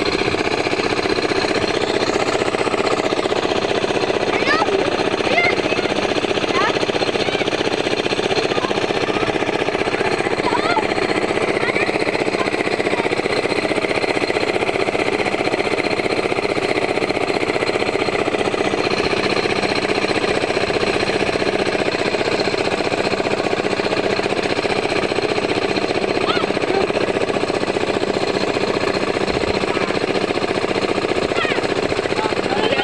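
An engine on a fishing boat running steadily, with a fast, even clatter.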